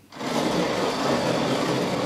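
Large hand-cranked shop coffee mill with twin spoked flywheels being turned, grinding coffee: a steady grinding noise that starts abruptly just after the beginning.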